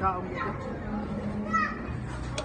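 A toddler's voice: two short high-pitched wordless vocal sounds, one at the start and one about a second and a half in.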